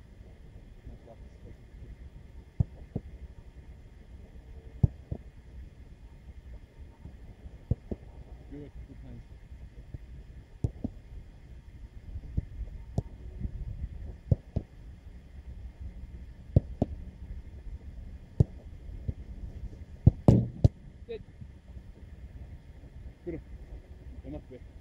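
Footballs being kicked and struck during goalkeeper practice: sharp thuds at irregular intervals, the loudest cluster about twenty seconds in, over a low wind rumble on the microphone.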